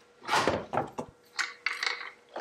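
Handling sounds of a RAM mount being worked on an aluminium boat's gunwale: a longer scraping rub about half a second in, then a few short, lighter rubs and knocks near the end.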